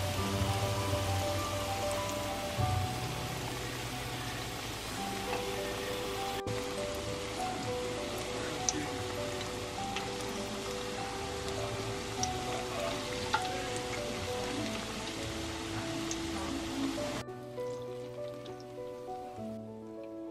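Hushpuppy batter deep-frying in hot oil in a skillet: a steady sizzle with a few sharp pops, heard over background music. The sizzle cuts off suddenly about three seconds before the end, leaving only the music.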